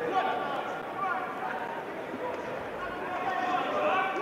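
Men's voices from the ringside crowd, talking and calling out, steady throughout.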